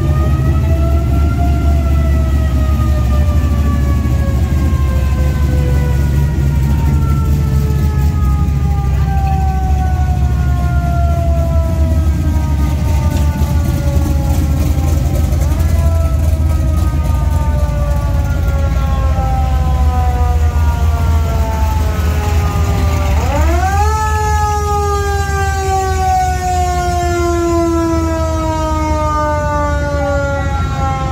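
A siren winds up three times, at the start, about halfway and near 23 seconds in, each time sliding slowly down in pitch over many seconds. Under it is the steady low rumble of hot-rod and classic-car engines rolling past at parade pace.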